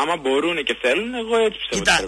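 Only speech: a man talking continuously.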